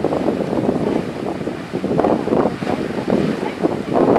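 Grand Geyser erupting: a loud, steady rushing of water jetting up and splashing back down into its pool.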